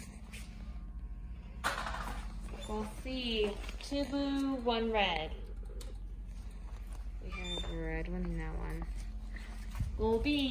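People's voices talking in a few short, high-pitched phrases that are not made out as words, over a steady low hum.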